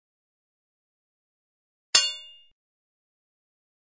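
A single metallic clang about two seconds in, a sharp strike with a ringing tail that dies away within about half a second, in otherwise dead silence.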